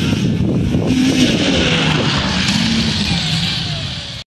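Snowmobile engine running hard as the machine passes close by, its pitch shifting up and down with the throttle, then fading slightly near the end as it moves away.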